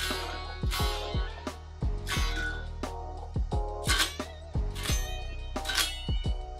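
Electric guitar played unplugged, a 1990s Made-in-Japan Washburn N4 with a Floyd Rose bridge newly fitted with an FU-Tone brass big block. Single notes and double stops are picked in quick succession, each ringing briefly, with a few bent notes.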